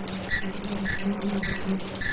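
Fish-type KF94 mask making machine running: a steady low hum with a short high-pitched blip repeating evenly, a little under twice a second, as the machine cycles.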